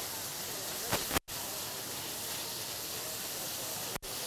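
Ground beef sizzling in a stainless steel pan on high heat, a steady hiss while it is stirred and broken up. The sound cuts out briefly just over a second in.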